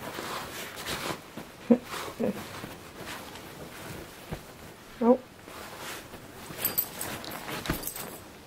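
Two dogs play-wrestling on a bed: bedding and fur rustling and shifting, with three short vocal sounds, about two seconds in, half a second later, and about five seconds in.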